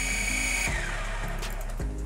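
Small brushed, gear-driven propeller motors of an SG701 toy quadcopter whining at a steady high pitch, then spinning down and stopping under a second in as they are switched off from the transmitter's joysticks.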